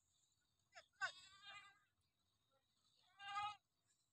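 A goat bleating faintly three times: a short call under a second in, a longer wavering bleat right after, and another near the end.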